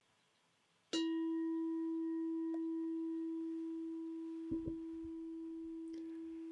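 A meditation bell struck once about a second in, its clear tone ringing on and fading very slowly, sounded to open a meditation. A soft low knock comes about two-thirds of the way through.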